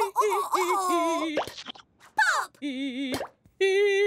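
Cartoon popping sound effects: two quick rising pops, about one and a half and three seconds in, as a second letter P pops into being. Wordless cartoon-character vocal sounds play around them, and a long held note comes in near the end.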